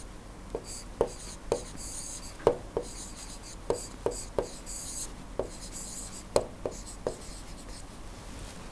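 A stylus writing on a tablet: the pen tip taps on the surface in short, sharp clicks, irregularly about twice a second, with light scratching between the strokes.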